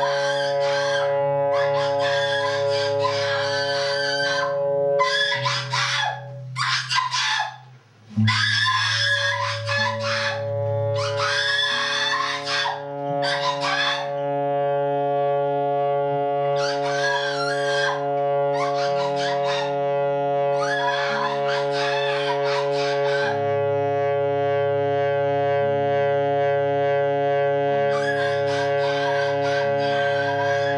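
Improvised noise music: a steady drone of sustained tones from guitar through effects and saxophone, its low notes shifting in steps, overlaid by about ten bursts of high-pitched shrieking screams, some a few seconds long, some brief. The sound drops out briefly around seven to eight seconds in, and the second half has longer stretches of drone alone.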